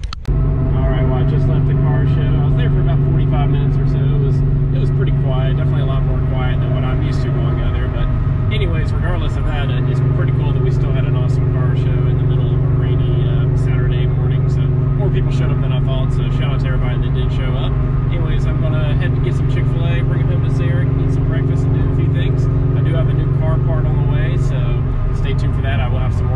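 Car engine and road noise heard from inside the cabin at highway speed: a steady, loud drone whose pitch wavers briefly about eight seconds in.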